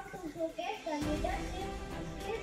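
Children's voices singing together in a melodic line, heard through a public-address loudspeaker with a low hum beneath.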